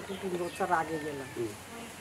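A woman's voice making soft, drawn-out sounds that the recogniser did not catch as words, like hesitating or humming between phrases.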